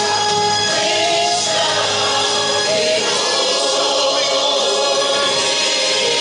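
A congregation singing a gospel hymn together in long, sustained notes.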